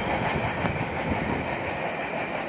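Freight train wheels rolling away on the rails just after the last car has passed: a steady rumble and rail noise, slowly fading.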